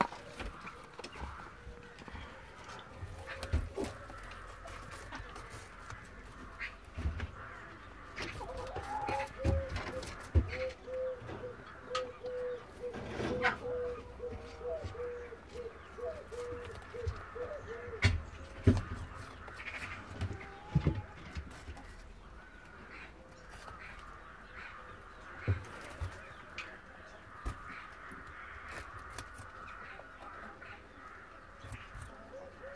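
German giant rabbit chewing hand-fed apple slices and carrot, with many small crunching clicks and knocks. In the middle a bird calls in a long run of short, even notes.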